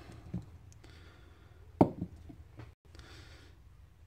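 Quiet hand sounds as a folded paper slip is drawn from a mug and opened, with one sharp click a little under two seconds in and a smaller tick just after.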